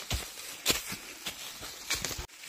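Footsteps on dry leaf litter and undergrowth while climbing a forest slope: a series of short steps, about one every half second.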